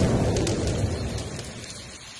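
Thunder rumbling and dying away over falling rain, fading steadily to a faint water hiss by the end.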